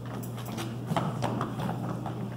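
Hurried footsteps of several people on a wooden stage floor, a quick irregular run of knocks.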